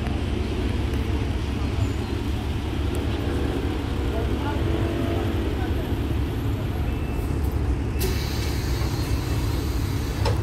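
Alexander Dennis Enviro400 double-decker bus idling at a stop, its diesel engine giving a steady low rumble. About eight seconds in, a hiss of compressed air starts and carries on as the doors close.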